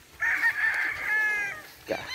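A gamefowl rooster crowing once, a single crow about a second and a half long.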